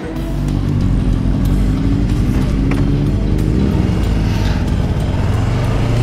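Yamaha R3's parallel-twin engine running under way, heard from on the bike, its pitch climbing and dropping several times with the throttle and gear changes.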